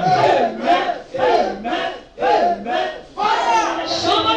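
A woman's voice through a microphone, praying aloud with fervour in a run of short, loud bursts of rapid syllables that the speech recogniser could not make into words. There are brief pauses about every second.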